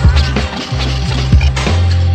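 Hip-hop beat playing without vocals: a deep, sustained bass line under regular kick-drum hits and sampled instrumentation.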